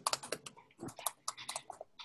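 Typing on a computer keyboard: a quick, uneven run of keystroke clicks as a short phrase is typed.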